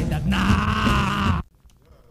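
Rock band recording ending on a long, wavering sung note over the band, cut off abruptly about one and a half seconds in, leaving only faint tape hiss.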